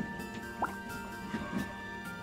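Background music with a few small water plops and drips as micropipette parts are dropped into a bowl of soapy water; one plop about half a second in has a quick upward pitch glide.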